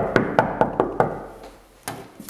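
Quick knocking on a wooden door, about five knocks a second, stopping about a second in, then one sharp click near the end.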